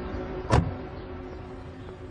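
A car door shutting with one sharp thud about half a second in, over the fading tail of background music.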